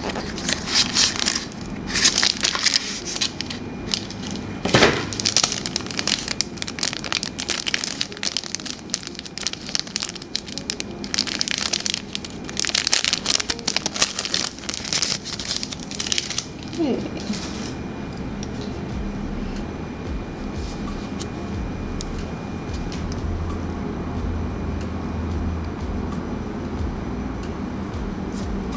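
Clear plastic packaging crinkled and pulled open by hand, in repeated bursts of rustling that stop about seventeen seconds in, leaving a low steady room hum.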